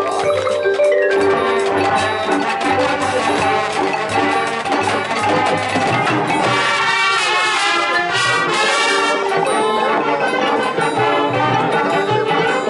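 High school marching band playing its field show, with the front ensemble's marimbas and other mallet percussion prominent. The music fills out and brightens about halfway through.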